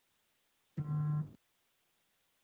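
Near silence, broken about a second in by one short, steady, pitched tone lasting about half a second.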